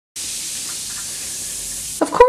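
Bath bomb fizzing in bathwater: a steady hiss that starts abruptly just after the beginning and holds even throughout.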